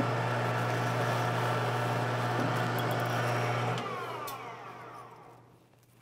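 Precision Matthews PM-1440GT metal lathe's spindle running steadily after drilling through a brass case. About four seconds in it is switched off, and its whine falls in pitch as the spindle coasts to a stop over about a second and a half.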